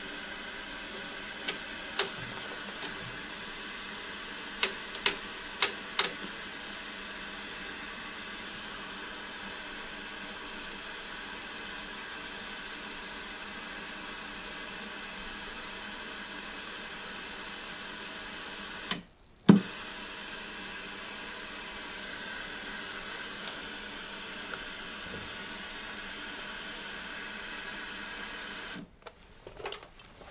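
Old CRT television with no station tuned, hissing with static from its speaker over the steady high-pitched whine of its line-output transformer. Several sharp clicks come in the first six seconds, and a brief dropout with one louder click about two-thirds through. The hiss and whine cut off suddenly near the end as the set is switched off.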